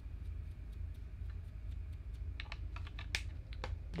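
Scattered light clicks and taps from makeup tools and compacts being handled, more of them near the end, over a low steady hum.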